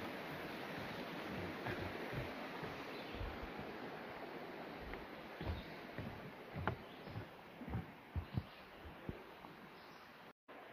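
Steady rush of a stream, slowly fading away, with scattered footstep thumps from about halfway through, on the wooden planks and steps of a footbridge.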